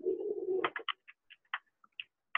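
A bird calling: a low, steady note, then a quick run of short, high chirps that grow sparser.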